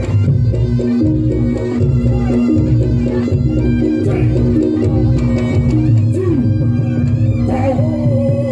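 Reog gamelan music playing at a steady loud level: regular drum strokes under long held melody notes.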